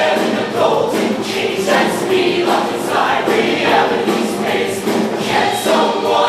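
A large mixed show choir singing together in short, rhythmic phrases.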